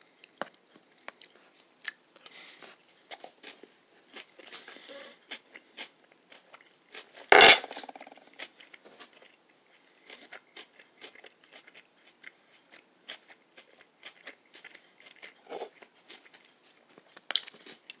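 A person chewing a mouthful of jerk chicken salad with crisp vegetables: soft irregular crunching and mouth clicks, with one louder burst about halfway through.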